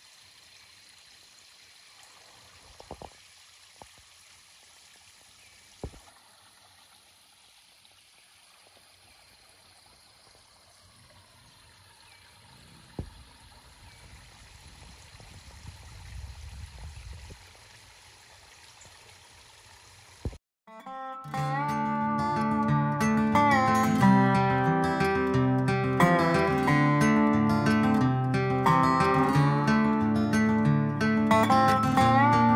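Faint trickle of a shallow creek running over small rock ledges, with a few soft clicks and a low rumble for a few seconds in the middle. About two-thirds of the way through, much louder acoustic guitar music starts.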